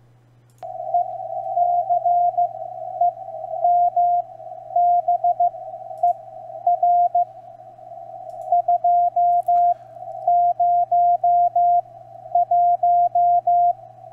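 Morse code (CW) from a strong amateur station on the 20-metre band, received on a software-defined radio with the CW peak filter still off. A single steady-pitched tone keyed on and off in dots and dashes over a narrow band of receiver hiss, starting a little after half a second in as the audio is unmuted.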